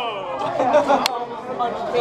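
Chatter of several people talking at once, with one short sharp click about halfway through.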